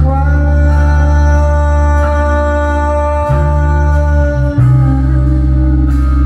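Live rock band playing: electric guitar, electric bass and drum kit, with one long held note over the first half of the passage and the bass line moving to new notes after it.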